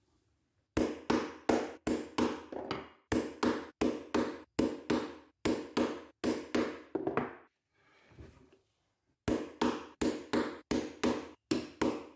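Repeated blows on a steel hollow punch driving holes through leather, about three strikes a second, each with a short ring. The strikes stop for a couple of seconds past the middle, then start again.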